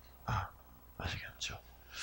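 Soft, fragmentary speech from a man: a few quiet, breathy syllables with pauses between them.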